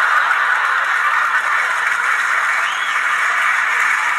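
Studio audience applauding and laughing, a steady wash of clapping that carries on through the pause, heard thin and tinny through a TV speaker.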